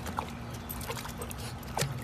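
A puppy whimpering in several short, high cries as it wades into a swimming pool, over a low steady hum.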